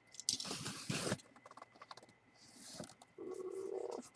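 Cardboard box being handled and opened by hand: scraping and rustling of cardboard, loudest in the first second, followed by fainter sliding and a short hiss.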